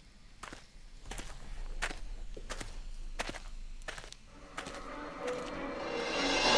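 Footsteps through dry grass at a steady walking pace, about three steps every two seconds, growing slowly louder.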